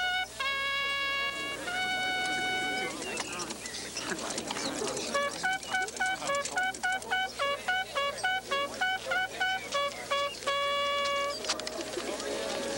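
Bugle call: two held notes, a short pause, then a quick run of short notes hopping between a few pitches, ending on one long held note.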